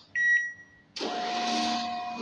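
A cash withdrawal/deposit ATM gives one short, high reminder beep, prompting the user to take back the card. About a second in, a steady, noisy sound with held tones comes in, the start of background music.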